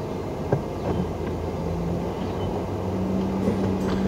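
Car engine idling, heard from inside the cabin: a steady low hum, with a couple of light clicks in the first second.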